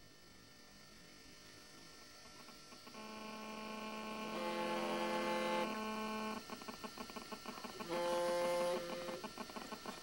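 Flip phone ringing on a table: an electronic ringtone of steady notes that starts about three seconds in and grows louder, broken by stretches of rapid buzzing pulses.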